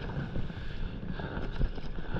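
Wind buffeting the microphone over the sound of water lapping against a stand-up paddleboard on open sea, with a few faint ticks.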